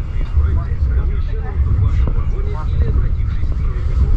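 Inside a passenger coach of a moving train: a steady low rumble of the running gear on the track, with indistinct voices talking over it.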